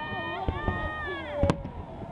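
Fireworks shells bursting overhead: a few sharp bangs, the loudest about one and a half seconds in. Onlookers' voices run under them, including a long held call that falls in pitch just before the loudest bang.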